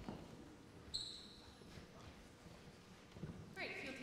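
Faint hall room noise with a few soft thumps and one short, high-pitched squeak about a second in. A woman starts speaking near the end.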